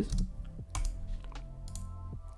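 Computer keyboard typing: several scattered keystrokes.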